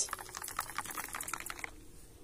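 Twigs and leaves rustling close by, a rapid irregular crackle that dies away near the end.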